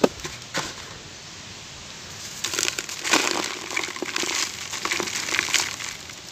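Dry, gritty clumps of charcoal ash crushed and crumbled between bare hands, a dense crunching with many small crackles that sets in about two seconds in, after a sharp tap at the start.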